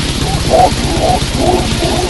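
Thrash/death metal recording: distorted guitars and fast, pounding drums under growled, guttural vocals.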